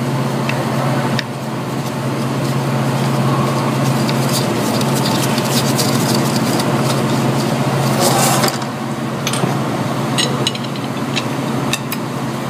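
Steady low mechanical hum of running shop equipment, with light metallic clicks and taps as an air-test adapter is threaded by hand into the ICP sensor port of a 6.0L Powerstroke's valve cover. A brief rasp comes about eight seconds in.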